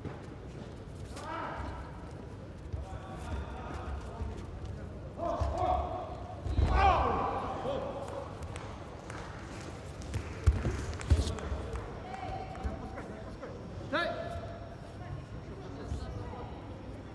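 Judo bout on a tatami: voices shouting out in short calls, over dull thuds of the fighters' feet and bodies on the mat, the heaviest about six and a half seconds in and a sharp pair near eleven seconds.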